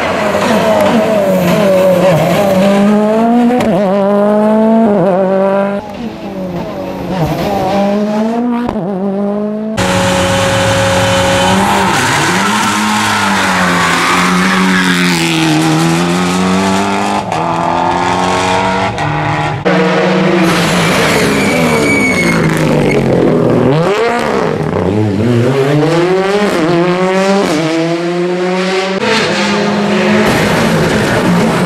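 Rally cars at speed on tarmac, one after another, engines revving hard. The pitch climbs and drops again and again through gearshifts, with some tyre squeal. The sound cuts abruptly to a new car about a third and two-thirds of the way through.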